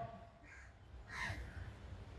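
Faint crow cawing in the background in the pause between speech: a short call about half a second in and another just after one second, over a low steady hum.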